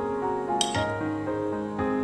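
Soft solo piano music plays throughout, with one sharp clink of a metal spoon against a ceramic plate a little past halfway.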